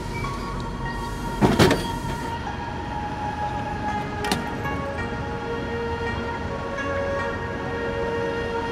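Japanese drink vending machine dispensing after a selection button is pressed: the drink drops into the collection tray with one loud knock about one and a half seconds in, followed by a short click about four seconds in. Background music plays throughout.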